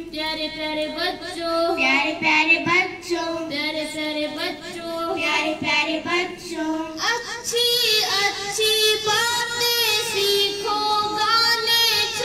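Young girls singing a song, the melody running on without a break; about seven seconds in a new phrase starts on a higher note.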